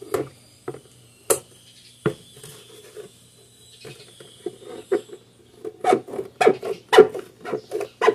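Scissors cutting through a thin plastic liquid-soap jug: irregular snips and crackles of the plastic, sparse at first, then a quicker run of snips over the last few seconds.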